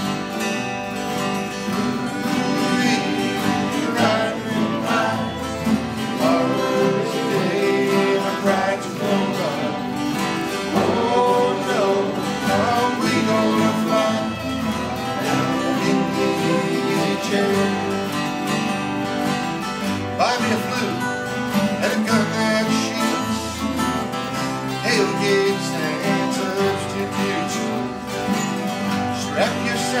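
Acoustic bluegrass-style string band of acoustic guitars and a mandolin playing an instrumental break between sung verses, with steady strummed rhythm under a picked lead line.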